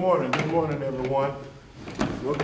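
A man's voice speaking close to the microphone, with a few short knocks and clicks as he settles in and handles his things.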